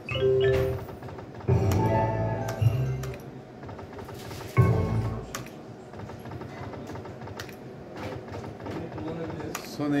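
Online slot game sound effects: short musical jingles that set in suddenly at the start, at about one and a half seconds and near five seconds, each fading away, with clicks from the spinning and stopping reels in between.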